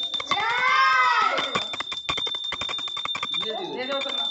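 Voices shouting in a small, echoing stairwell, with a rapid clatter of sharp clicks in the middle. A thin, steady high-pitched tone runs under it all.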